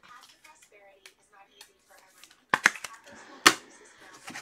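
Trading cards and their packaging being handled on a tabletop: a few sharp clicks and slaps in the second half, the loudest about three and a half seconds in, with rustling between them.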